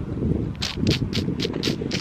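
Wind rumbling on the camera microphone, with a quick series of rustling clicks, about four a second, from about half a second in.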